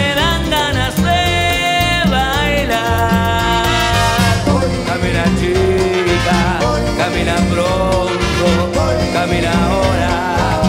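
A live Uruguayan plena band playing a dance groove. Congas, drum kit and bass keep a steady beat under held horn lines, with singers' voices in the mix.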